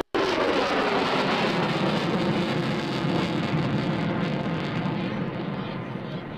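F-14 Tomcat's twin engines in full afterburner passing by with a loud, steady rushing rumble. It comes in abruptly and fades slowly in the last couple of seconds as the highs die away and the jet moves off.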